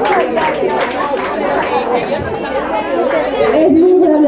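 Several people chattering at once; about three and a half seconds in, a woman's voice begins over it, speaking into a microphone.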